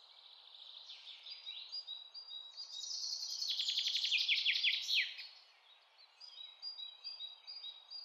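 Faint birdsong with high chirps and a fast trill that swells about three seconds in and breaks off around five seconds, followed by softer repeated short high notes.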